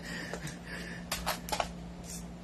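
A few faint clicks and short scrapes of hands handling a small hard part of an airsoft gun, bunched about a second in, over a steady low hum.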